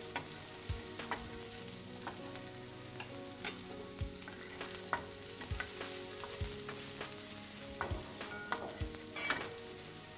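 Diced carrots and green pepper frying in oil in a frying pan, a steady sizzle, stirred with a wooden spatula that knocks and scrapes against the pan at irregular moments.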